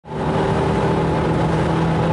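Renault Mégane RS 250 Cup's 2.0-litre turbocharged four-cylinder engine running at steady revs, heard from inside the cabin.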